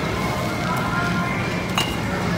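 One sharp clink of glass bottles near the end as a bottle is taken off a supermarket shelf, over a steady hum of store background noise.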